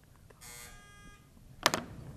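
Quiz-show time-up buzzer sounding for about a second: a steady buzzing tone that means the time to answer has run out. A short, sharp sound follows near the end.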